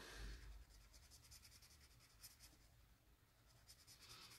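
Faint scratching of a Tris Mega Hidrocolor felt-tip marker's tip rubbing across sketchbook paper in a run of short strokes, as it colours and blends a small area.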